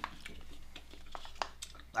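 Scattered soft clicks and rustles from a plastic food pouch being handled, with quiet chewing of the soft hearts of palm sheets.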